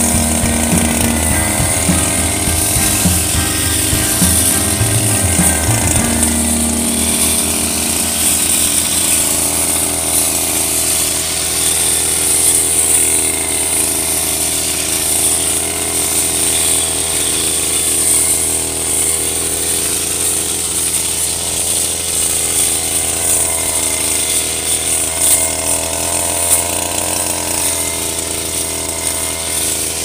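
Brush cutter engine running at high speed while its metal blade cuts grass, with a steady high whine over the engine note and a pitch that wavers slightly as the load changes. It sounds rougher for the first few seconds, then runs more evenly.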